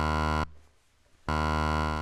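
Eurorack synthesizer tone switched on and off by the ROTLFO's square-wave LFO at even up and down pulses. A steady low tone cuts off about half a second in, falls to near silence for under a second, then comes back at the same pitch.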